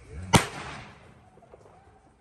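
A single sharp crack about a third of a second in, with a short ringing tail that dies away within about half a second.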